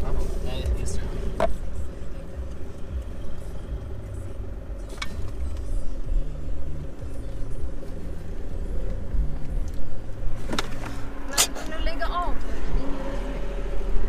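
Car engine and tyres running while driving, heard from inside the cabin as a steady low rumble, with a few sharp clicks along the way.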